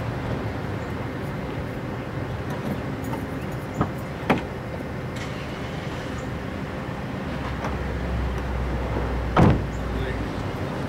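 Steady traffic and engine rumble, with two short clicks about four seconds in and a louder knock near the end.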